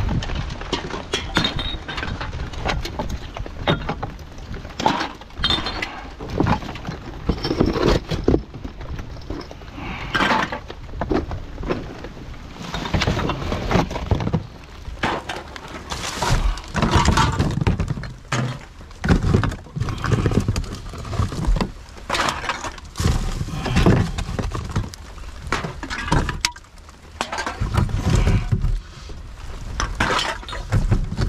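Rubbish being rummaged through in a plastic wheelie bin: plastic bags rustling and drink cans and glass bottles knocking and clattering in irregular bursts, as cans and bottles are pulled out and added to a boot-load of empties.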